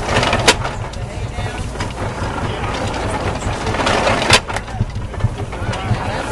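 Belt-driven 1910 Columbia hay baler at work, powered by a tractor. A steady low engine pulse runs under the machine's clatter, and two sharp knocks come about four seconds apart.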